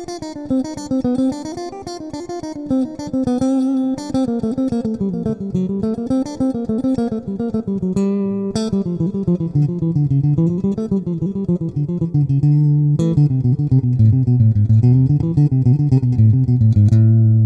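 Stratocaster electric guitar playing a fast, alternate-picked harmonic minor scale sequence in even sixteenth notes. The sequence moves through C minor, G minor, D minor and A minor in a cycle of fifths, and the notes weave up and down, settling lower toward the end.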